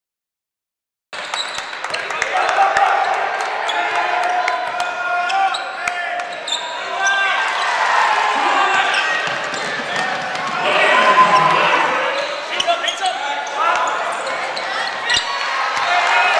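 Basketball game in a large gym: a ball bouncing on the hardwood court amid a hubbub of voices, echoing in the hall. The sound starts about a second in.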